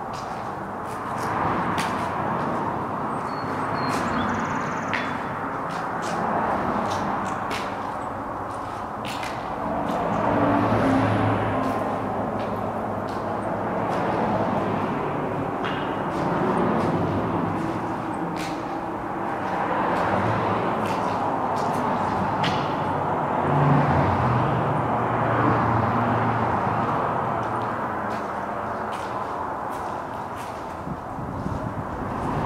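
Outdoor traffic noise: a steady wash of passing vehicles that swells and fades every few seconds, with a few faint clicks.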